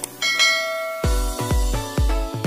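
A ringing bell-like chime of several tones sounds near the start and fades, like a subscribe-button notification sound effect. About a second in, electronic dance music with a steady heavy bass kick comes in.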